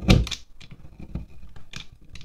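A knife blade scraping shavings off a wax pillar candle. One loud, rough scrape right at the start, then several shorter, softer strokes about every half second.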